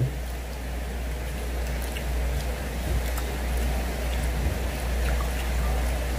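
Steady low hum under an even rushing background noise, with a few faint ticks and no clear event.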